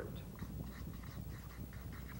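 Felt-tip marker squeaking and scratching on flip-chart paper in short, irregular strokes as letters are written, faint over a low steady hum.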